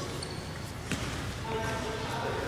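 A futsal ball kicked on a hard court floor: one sharp knock about a second in, over the steady noise of a large sports hall.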